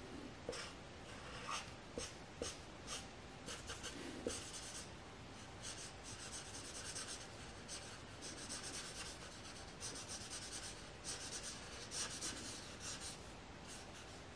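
Felt-tip marker scratching on paper: short separate strokes at first, then longer, denser runs of strokes from about halfway through.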